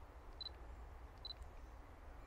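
A digital camera giving two short, high, identical beeps about a second apart, the beep of autofocus locking. A faint low hum lies underneath.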